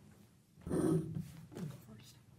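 Chairs and table items being handled as two people sit down at a table fitted with microphones: a short burst of scraping and rustling about half a second in, and a smaller one near the end.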